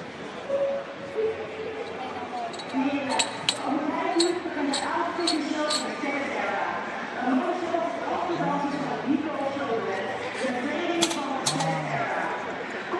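Sharp metallic clinks, a quick run of them a few seconds in and a couple more near the end, as loaders change the bumper plates and collars on a weightlifting barbell, over murmured voices in a hall.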